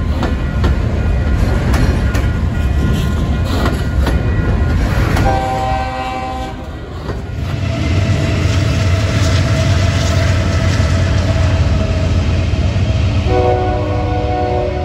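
Double-stack intermodal freight cars rolling past, wheels clicking over rail joints. About five seconds in, a locomotive's chord air horn sounds briefly; then the train keeps rumbling and the horn sounds again near the end.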